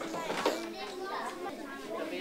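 Classroom chatter: several young children talking at once, their voices overlapping.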